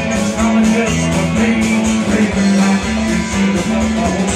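Live country band playing an instrumental passage: guitars strummed over a steady beat.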